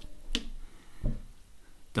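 A sharp click about a third of a second in, then a softer tap about a second in: a small varnished wooden dolls' house chair being set down on card.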